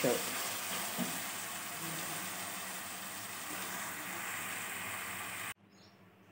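Thick ridge-gourd masala curry sizzling in an aluminium pot as it is stirred with a wooden spoon, a steady hiss that cuts off suddenly near the end.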